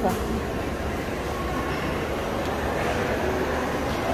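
Steady background din of a busy shopping-mall food court: distant chatter over a constant ventilation hum.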